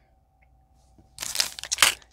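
Medicine packaging crinkling and rustling as it is handled, in a burst of crackly rustle that starts a little past halfway through.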